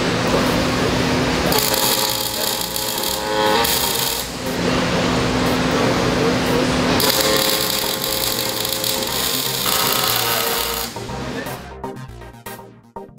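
Robotic MIG welding arc crackling and buzzing in runs of a couple of seconds as it welds steel wire screen, over background music.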